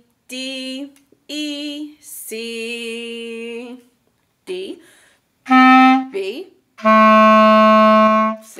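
A woman sings a few note names of the melody with vibrato, then plays the phrase on a clarinet: a short note, a quick slide up, and a long held note.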